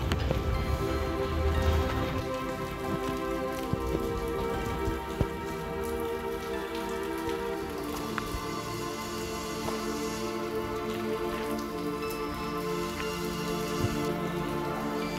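Background music of soft held chords with no beat, moving to a new chord about halfway through, over a steady hiss.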